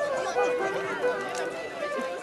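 Indistinct speech of people in the crowd over background music that carries steady held tones.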